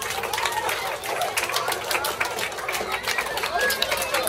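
Many children and teachers clapping their hands, dense scattered claps mixed with chattering and calling voices.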